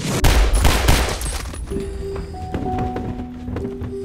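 A rapid burst of gunshots, several in quick succession over about a second and a half, followed by sustained notes of the film's score.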